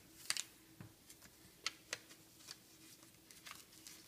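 A sheet of printed paper being folded and creased by hand: faint, irregular crinkles and taps.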